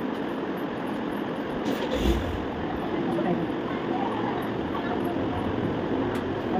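Steady background noise with faint voices, and a low thump about two seconds in as a ring light's metal tripod stand is handled.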